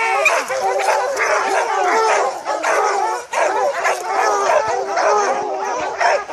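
A pack of bear hounds barking and bawling together in a dense, unbroken chorus of overlapping voices, baying a bear at the tree.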